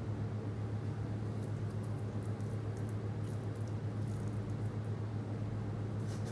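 A steady low electrical hum over background hiss, with faint, soft ticks here and there.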